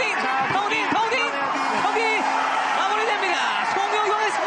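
Excited voices talking and calling out over one another as the fight is stopped, with one long held call about halfway through.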